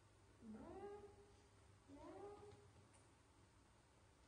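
Two short calls from a baby macaque, about a second and a half apart. Each slides up in pitch and then holds briefly, a meow-like coo.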